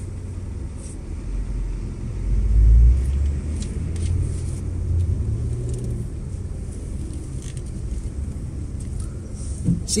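Low rumble of a car's engine and road noise heard inside the cabin as it moves slowly in traffic, swelling briefly about two to three seconds in.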